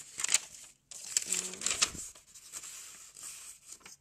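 Paper pattern sheet rustling and crinkling as it is handled, with a few sharp crackles. A brief voiced murmur about a second and a half in.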